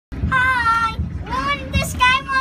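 A child singing in a high voice, with long held notes and a rising glide, over a low steady rumble.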